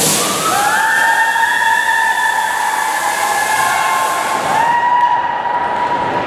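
A stage-effects jet machine firing, a loud hiss that starts suddenly and cuts off about five seconds in. Over it a steady high tone rises twice and holds.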